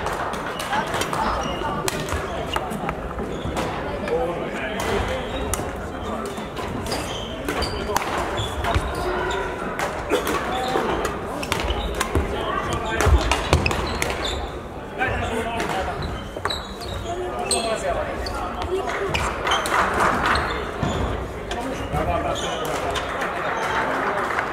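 Badminton rally: sharp racket strikes on the shuttlecock and footfalls on the court floor, with hits from neighbouring courts and hall chatter behind. About halfway through comes a jump smash, followed by the loudest sound, a heavy thud of the player landing.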